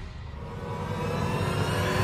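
A swell of noise that starts quiet and grows steadily louder, with faint tones gliding upward in pitch.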